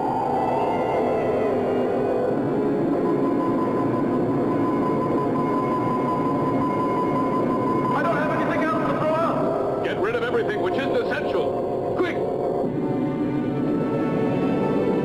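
Science-fiction film score: a dense music bed under a steady high electronic tone. About eight seconds in, warbling, wavering pitched sounds come in for some four seconds, ending with a sharp click.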